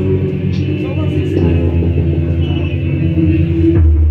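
Amplified electric guitar played live through a PA, with held notes ringing over a steady low drone.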